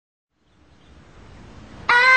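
Silence, then faint background noise slowly swelling, and a child's singing voice starting a held, wavering note abruptly near the end.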